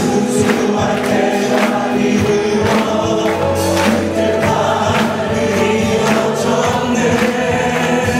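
A worship team of men and women singing a Korean praise song together through microphones, over instrumental accompaniment with a steady percussive beat.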